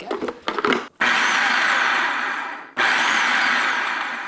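Electric food processor pulsed twice, its motor and blade running about a second and a half each time, then stopping abruptly. It is blending a batch of basil pesto in the final pulses after the Parmesan goes in.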